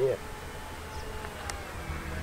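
Faint steady whine of a twin-motor RC model plane's motors and propellers as it flies overhead, over a low rumble.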